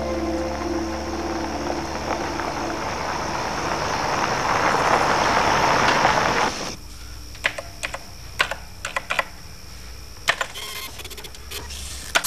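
A car approaching along a dirt road, its engine and tyre noise growing louder and then cut off abruptly. Then a desk calculator's keys being pressed in a series of irregular clicks.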